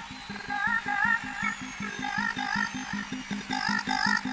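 Electronic dance music from a club DJ set. A fast, even bass pulse runs under a short synth riff of bending notes that repeats about twice a second.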